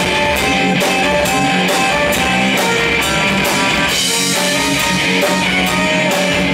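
Live rock band playing loudly: electric guitars, accordion and a drum kit keeping a steady beat, with held notes under regular drum and cymbal hits.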